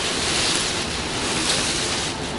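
Plastic bags and wrapping rustling as a pile of clothes is rummaged through and garments are pulled out: a continuous rustling noise.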